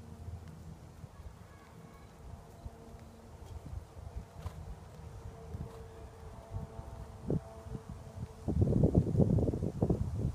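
Faint outdoor ambience with a steady low hum, then wind buffeting the phone's microphone in loud, irregular gusts for about the last second and a half.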